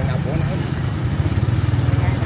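Small motorbike engine running steadily at low speed, a low even throb heard from on the bike.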